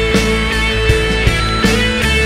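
Recorded pop-rock band music with no singing: drums, bass and electric guitar playing, with a long held melody note over regular drum hits.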